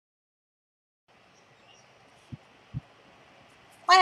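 Digital silence, then from about a second in a faint steady background hiss with two short low thumps about half a second apart; a woman's voice starts just at the end.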